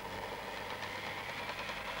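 Handheld electric drill running steadily with its chuck pressed to the hub of a 50-pound gyroscope wheel, spinning the wheel up.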